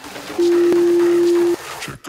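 Workout interval timer's final countdown beep: one long, steady, low electronic tone lasting about a second, starting about half a second in. It marks the end of an exercise interval.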